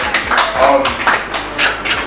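A small audience clapping in irregular, overlapping claps, with a few voices among them.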